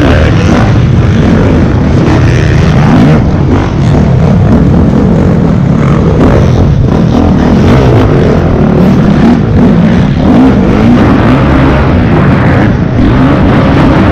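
Dirt bike engine revving up and down as the rider accelerates and backs off around a supercross track. It is loud and close, heard from a camera mounted on the bike.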